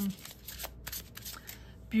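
Cards of a Secret Garden oracle deck being handled: faint rustling with a few light clicks.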